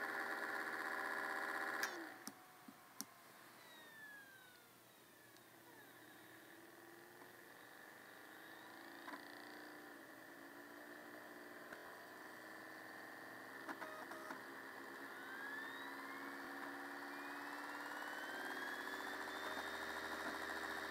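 An old MacBook's fan and spinning drives: a steady whir cuts off with a few clicks about two seconds in as the laptop shuts down, and faint whines fall away in pitch. Later, as it powers back on, faint whines rise in pitch and the whir slowly builds again, with a few small clicks along the way.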